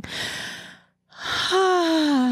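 A woman's breathy intake of breath, then after a brief pause a long sigh voiced on a falling pitch.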